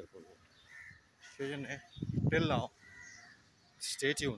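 Crows cawing, several calls, the loudest a little after halfway, mixed with brief sounds of a man's voice.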